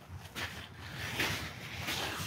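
Faint scuffing and soft noises from a horse nosing at wet gravel footing to drink from a shallow puddle, over light wind noise on the microphone.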